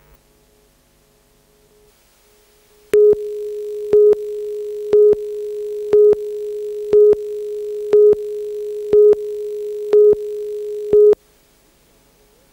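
Broadcast tape countdown-clock line-up tone: a steady single tone with a louder beep on each second of the count, nine beeps in all, starting about three seconds in and cutting off suddenly near the end.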